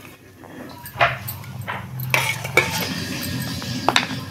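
Stainless steel bowl and kitchen utensils being handled: a sharp clink about a second in, then a stretch of scraping and clattering of metal, ending in another clink.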